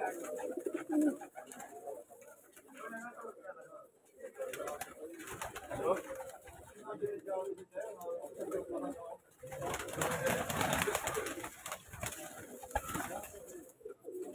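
Domestic pigeons cooing in a loft, with wings flapping and a louder rustle about ten seconds in.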